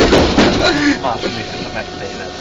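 A man's voice, stopping about a second in, over the tram's steady running noise.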